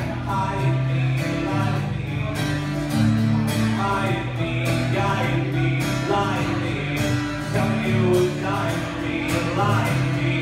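A man singing solo with his own strummed acoustic guitar, played live through a microphone.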